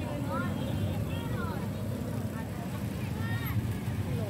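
Motorcycle engines running slowly through a dense crowd, a steady low rumble, with people's voices rising and falling over it.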